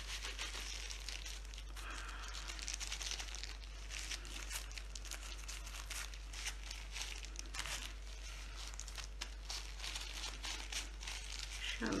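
Thin disposable plastic gloves crinkling and rustling in quick, irregular crackles as gloved hands knead marshmallow fondant dusted with powdered sugar.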